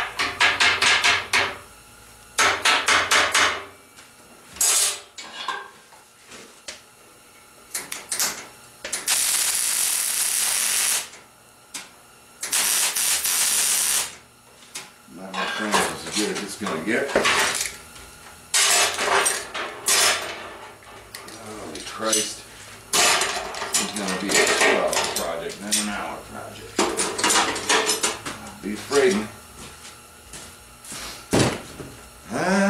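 Steel locking clamps and steel pieces clanking and clattering against a steel welding table, in clusters of sharp knocks. Near the middle come two steady hissing bursts of about two seconds each.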